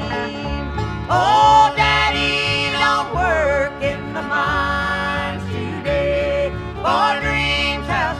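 Bluegrass band music: acoustic guitar and banjo accompany a lead melody line that slides and wavers in pitch.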